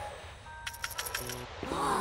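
A cartoon sound effect: a quick run of about half a dozen light, clinking clicks just before the middle, followed by a short pitched, voice-like sound near the end.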